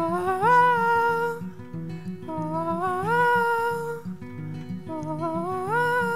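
A man sings three wordless 'oh' phrases, each held and sliding upward in pitch, over a plucked acoustic guitar accompaniment.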